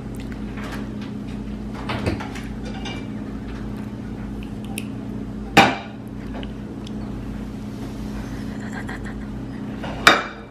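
Kitchen noises: a steady low hum with a few light clicks, and one sharp knock about five and a half seconds in.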